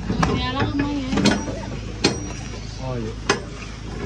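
Steel shipping container door being unlatched and opened: several sharp metallic clicks and knocks from the locking handles and bars.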